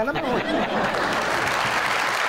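Audience applause, a steady even clapping that starts as a man's last words end just after the start and keeps going.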